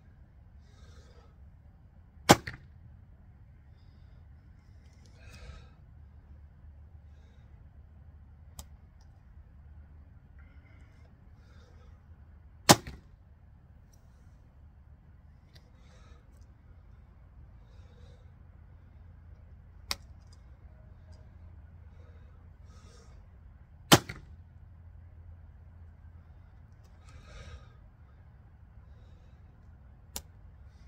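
A recurve bow shot three times, about ten seconds apart: each release gives a sharp snap of the bowstring. Softer rustling of handling and nocking arrows comes between the shots, with two faint clicks.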